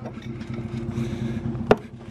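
Pickup truck engine idling with a steady low hum. A single sharp click comes near the end as the rubber latch on the salt spreader hopper's lid is unhooked.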